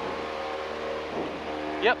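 Cessna 172's piston engine and propeller droning steadily in cruise, heard inside the cabin: a constant hum of even tones over a rushing haze.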